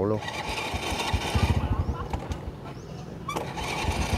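Small motorbike engine running at low revs with a steady low putter, coming in about a second in and growing louder near the end.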